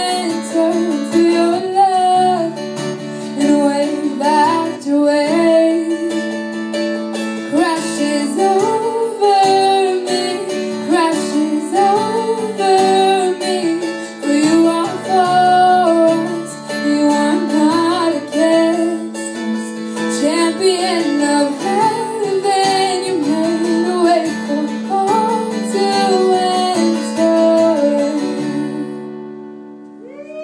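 A woman singing a slow worship song to acoustic guitar accompaniment, her melody rising and falling over steady strummed chords. The song ends about a second before the close.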